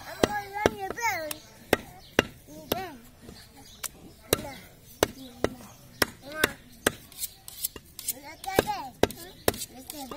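Butcher's cleaver chopping goat meat on a wooden log chopping block: sharp, irregular strikes about twice a second.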